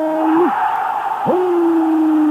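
A male football commentator's voice drawing out a player's name in long held calls, "Diegooo", on one steady pitch: one ends about half a second in, another starts just over a second in and is still held at the end, with stadium crowd noise between them.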